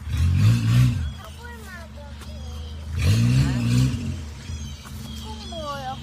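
Small off-road 4x4's engine running at low revs, with two short bursts of throttle: one right at the start and one about three seconds in.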